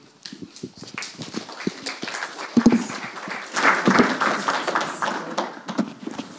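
Audience applause, made of many scattered claps, which thickens in the middle and then thins out, with a couple of low thumps among it.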